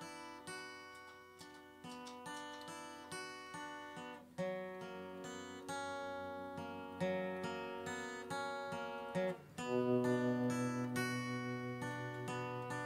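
Acoustic guitar playing the instrumental opening of a song: chords strummed and picked in a steady rhythm, changing every two or three seconds, with a fuller, lower chord coming in louder near the end.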